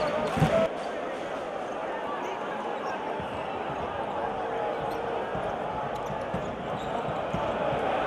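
Basketball arena ambience: steady crowd noise with voices, and a basketball being dribbled on the hardwood court. A louder passage cuts off less than a second in.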